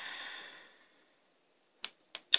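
A deck of tarot cards being shuffled by hand, a soft rustle that fades out about a second in. Two short clicks follow near the end.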